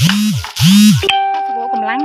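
A short electronic jingle or sound effect: two quick swooping tones, each rising and falling, followed by a held steady note from about a second in.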